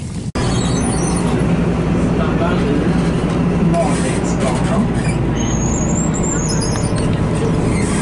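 Steady running noise heard from inside a moving city public-transport vehicle, with a low hum under it. A thin, high squeal wavers up and down for about a second and a half past the middle.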